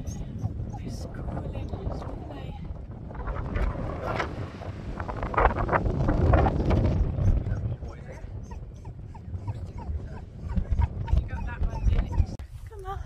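Wind buffeting the phone's microphone in gusts, loudest around the middle. Some short higher-pitched sounds ride on top of the wind.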